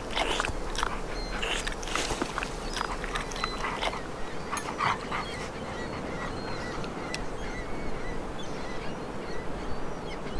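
Outdoor beach sound after the music has stopped: a steady rush of noise with many short, high bird calls scattered through it. In the first five seconds there is also a run of sharp, noisy bursts.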